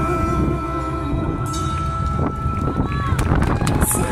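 A live band's last held note rings on and fades out, while audience clapping and voices take over as the song ends.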